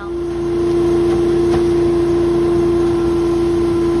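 Truck-mounted insulation removal vacuum running, pulling old attic insulation through the hose into its collection bag: a loud, steady hum at one pitch that swells in over the first half second and then holds.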